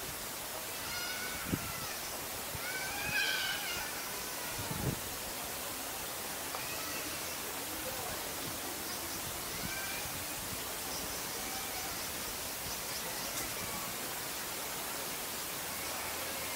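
Steady hiss of outdoor ambience, with a few short pitched calls in the first four seconds and fainter ones later, and two brief soft knocks.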